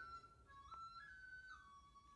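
Faint background music: a soft flute melody of a few held notes stepping up and down.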